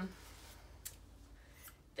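A few faint clicks and rustles from a ChiaoGoo interchangeable needle case being handled and a needle tip being taken out, the sharpest click about a second in.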